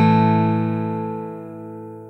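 A single strummed guitar chord ringing out and slowly fading away.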